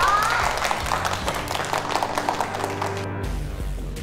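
A small group clapping over background music. The clapping stops about three seconds in, leaving only the music.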